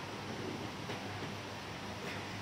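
Steady background noise with a low constant hum; no distinct sound stands out.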